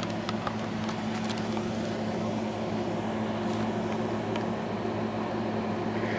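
Steady low hum with a faint background hiss, typical of room noise from an air conditioner or other running appliance. A few faint clicks sound in the first second and a half.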